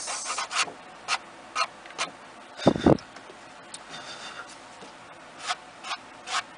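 Fingertip rubbing and brushing across cardstock in a few short strokes, wiping off embossing powder that stuck to ink that was not yet dry. A single louder thump comes about halfway through.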